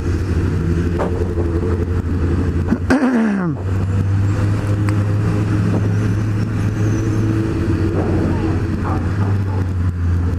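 Honda CB600F Hornet's 600 cc inline-four engine running steadily at low road speed, with a brief rise and fall in revs about three seconds in.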